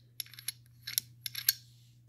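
The bolt of a Century Arms RAS47, an AK-pattern rifle, pushed in and out of its bolt carrier by hand: a handful of light metallic clicks and slides. It moves without catching, the sign that it is not getting hung up despite the gouge on the carrier.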